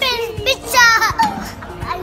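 A young boy squealing twice, high-pitched and falling in pitch, the second squeal longer and louder, over background music.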